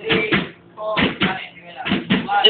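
A group of young voices shouting a chant together in a few short, separate syllables.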